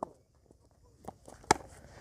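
A single sharp crack of a cricket bat hitting the ball about one and a half seconds in, preceded by a few faint footfalls.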